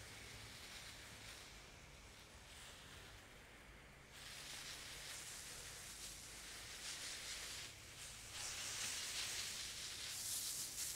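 Hose-end sprayer on a garden hose spraying insecticide mix over shrubs: a faint, steady hiss of spray that grows a little louder about four seconds in.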